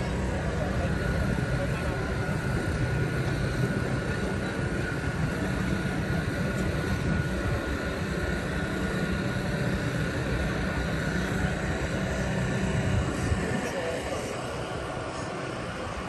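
Outdoor city ambience: a steady low rumble that falls away near the end, with voices of people nearby.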